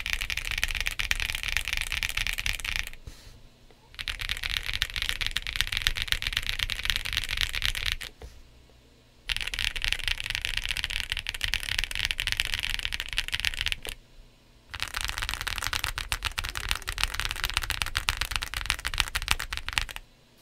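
Fast typing on a Cidoo V65, an aluminium gasket-mount 65% mechanical keyboard fitted with Quark Matte linear switches and Cherry-profile PBT dye-sub keycaps: a dense clatter of key presses. It comes in four runs, with short pauses about three, eight and fourteen seconds in.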